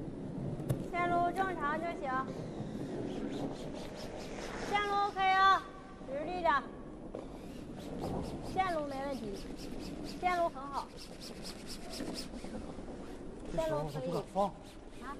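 A curling broom sweeping the ice in rapid, even strokes ahead of a sliding stone, under a steady rumble. Short, high-pitched shouted calls from the players come every couple of seconds.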